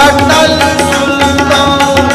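Sikh kirtan: harmoniums sustaining steady notes under a run of tabla strokes, with a man singing the hymn.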